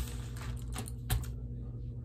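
A few light, scattered clicks over a steady low hum.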